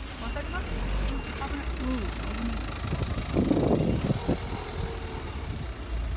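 Street ambience: a low, steady rumble of car engines and traffic, with people's voices talking nearby and a louder patch of noise a little past halfway.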